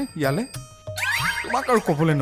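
Speech over background music, with a comic, springy musical touch.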